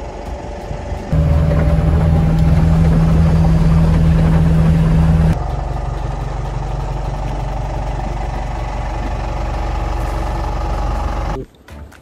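Boat engine running steadily under way, a loud low drone mixed with wind and water rush. The drone shifts in tone about five seconds in and cuts off suddenly near the end.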